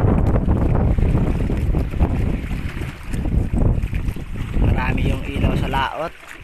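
Wind buffeting the microphone on a small open fishing boat: a heavy, uneven rumble throughout, with a voice briefly near the end.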